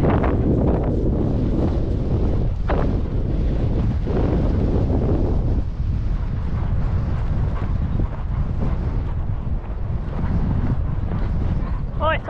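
Heavy wind noise buffeting the microphone of a camera mounted on a horse out riding: a loud, steady rumbling rush.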